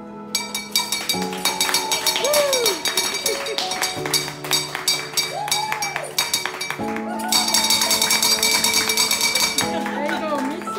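A wall-mounted hospital bell rung rapidly and continuously by its cord, the bell rung to mark the end of chemotherapy, with people cheering. Background music with sustained chords plays underneath.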